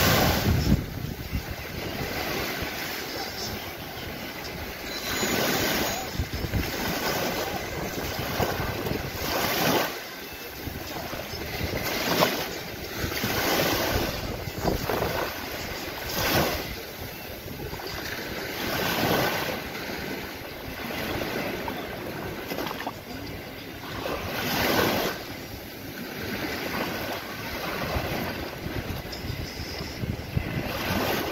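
Small waves breaking and washing up over sand at the shoreline close by, each surge of surf swelling and fading again every few seconds.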